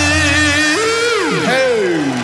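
The closing seconds of a live rock concert recording with the guitars removed. A low bass note cuts out about two-thirds of a second in, and a held, wavering note breaks into several overlapping falling glides as the song winds down.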